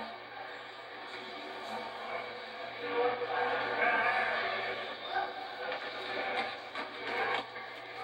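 Indistinct voices on the soundtrack of an old videotape of an amateur boxing bout, played through a television's speaker, so the sound is dull and lacks treble, over a steady low hum.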